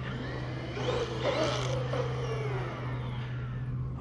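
Castle 1520 1650 kV brushless motor of a Traxxas Maxx V2 RC monster truck whining, rising then falling in pitch as the truck speeds up and backs off, over a steady low drone from a lawnmower.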